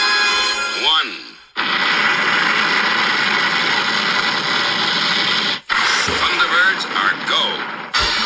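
TV-show opening soundtrack played from a phone's speaker. Music gives way, about a second and a half in, to a dense rocket-launch roar that cuts out briefly near the six-second mark and then carries on with whooshing effects.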